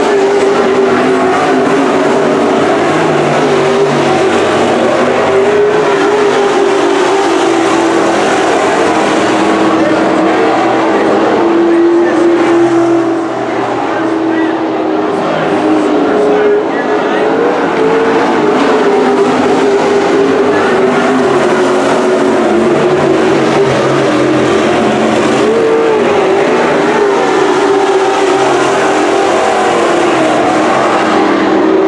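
Several WISSOTA Super Stock dirt-track race cars' V8 engines running hard around the oval: a loud, steady drone whose pitch wavers slightly as the cars go through the turns, dipping briefly about halfway through.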